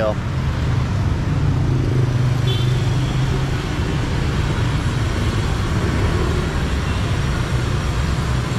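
Busy street traffic: a steady drone of motor scooter and car engines passing. A nearer engine hum swells for a couple of seconds early in the clip.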